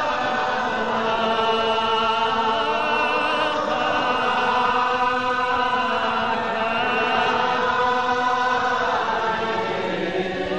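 A congregation singing a Gaelic psalm unaccompanied, many voices holding slow, drawn-out notes that waver and glide between pitches.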